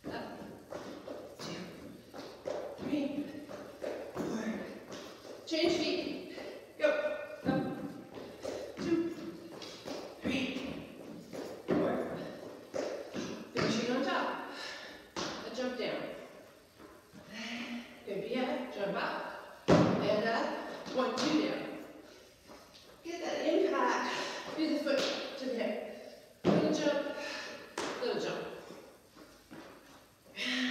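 Sneakers thumping and tapping on a plastic aerobic step platform in quick, uneven step-ups and step-downs, with one especially heavy landing about two-thirds of the way through.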